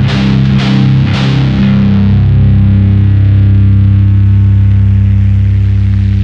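End of a power-metal song: the band's last few drum and guitar hits in the first second and a half, then a final distorted electric-guitar chord held and ringing out.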